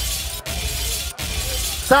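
Grime music playing over a club sound system: a steady bass line under a loud, hissing, crash-like noise that cuts out briefly twice.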